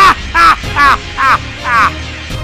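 A man's deep, harsh villain's laugh, acted by a voice actor: a loud run of 'ha' bursts, about five in two seconds, over a low background rumble.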